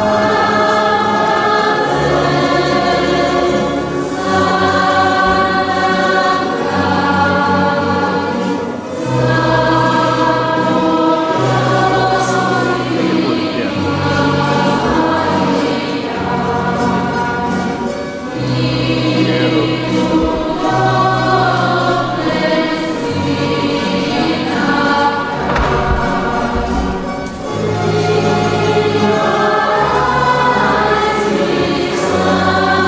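A church choir singing a hymn in phrases of a few seconds, with short breaks between them and long held low notes beneath.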